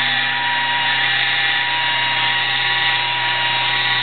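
Handheld electric polisher with a foam pad running steadily against a car's painted door, a constant motor whine, while it works paint sealer into the clear coat.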